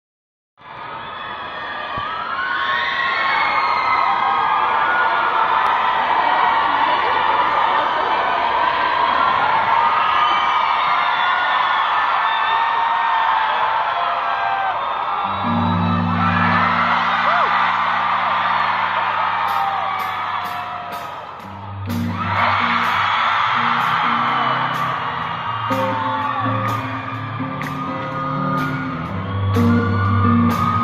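Concert crowd cheering and screaming in a large hall. About halfway through, a live rock band starts a song's intro: slow low bass notes, then a steady high cymbal tick about three times a second, and the full band comes in near the end.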